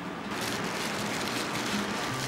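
Steady hissing outdoor background noise with no clear pitch, growing a little louder about a third of a second in.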